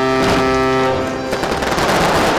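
A long, steady horn-like tone that stops about a second and a half in. It gives way to rapid crackling of fireworks going off.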